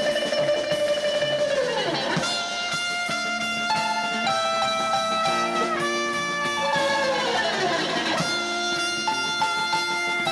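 Live band music: a trumpet carries the melody over plucked strings and a drum kit. Two long falling pitch slides come about two seconds in and again near eight seconds.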